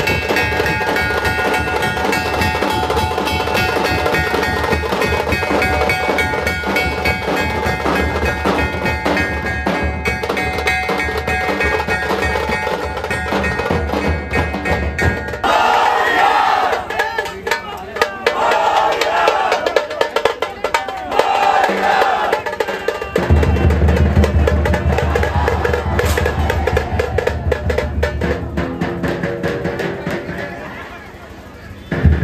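A dhol troupe beating large barrel drums in a fast, loud, continuous rhythm amid a dense crowd. About halfway through, the deep drums stop for several seconds while the crowd shouts, then the drumming comes back in.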